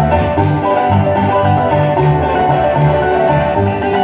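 Live Venezuelan llanera music played on a harp and a cuatro, an instrumental passage without singing, with a steady pulsing bass line under quick plucked notes.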